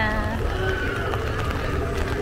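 A voice trails off at the start, then faint voices carry over a steady low outdoor rumble.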